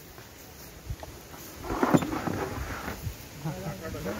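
A plastic crate full of sweet limes set down on a stack, a loud thump and clatter about two seconds in, amid workers' voices.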